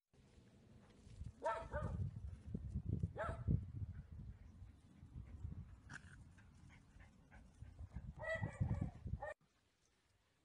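A dog barking a few times, spread through the clip, over a low rumble. The sound cuts off suddenly near the end.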